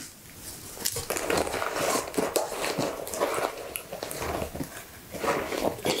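Close-miked rustling and crinkling of soft fabric being handled, a scrunchie and a silk headband, with irregular small crackles throughout.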